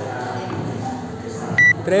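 Electronic workout timer giving one short, high, steady beep near the end, counting down the final seconds of a timed workout. Voices and gym noise run underneath.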